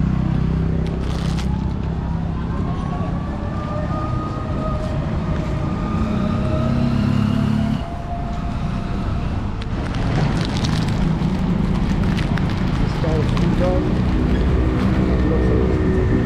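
Street traffic: motor vehicle engines running and passing close by, with people's voices mixed in. A vehicle's pitch glides up and down in the first half, and the mix changes at a cut about halfway through.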